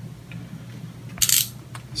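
A brief metallic jingle of hand tools being handled, a little past halfway, over a faint steady room hum.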